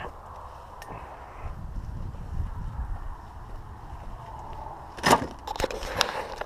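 Handling noise from a body-worn camera being carried: a low rumble and faint rustling, then a sharp knock about five seconds in followed by a few lighter clicks.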